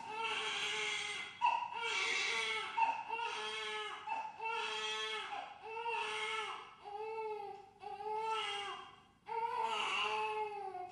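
A baby crying: repeated wailing cries of about a second each, with short breaths between.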